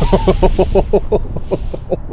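A man laughing in a long run of quick 'ha' pulses, about seven a second, tailing off toward the end, over the fading low rumble of an explosion.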